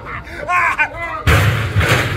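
A sudden loud bang about a second and a quarter in, followed by a second sharp crash just before the end, as a stunt performer is thrown backward off a chair into barrels and a metal trash can.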